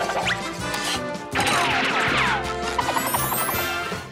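Cartoon background music with a loud crashing, clattering sound effect starting about a second and a half in, followed by a quick run of light ticks.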